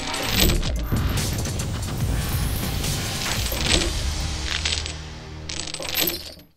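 Chains clinking and rattling as sound effects, a handful of separate metallic hits with short ringing tails, over music with a steady low bass.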